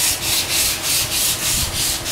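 Hand-sanding of a large carved xà cừ (khaya) wood vase over its freshly finished base coat, before the gloss coat: a quick back-and-forth scratchy rubbing at about four strokes a second.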